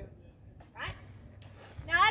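A woman's voice: a short gliding vocal sound about a second in, then speech starting near the end.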